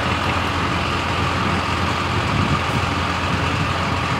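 Steady engine and road noise inside the cab of a 2022 Freightliner truck under way, an even low rumble with no changes.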